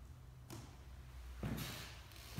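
Footsteps on old wooden floorboards, the boards knocking and creaking: a short sharp knock about half a second in, then a louder, longer noise near the end.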